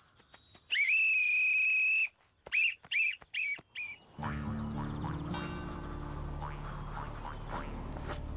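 A whistle blown during a football game: one long blast followed by four short peeps, then background music starts about halfway through.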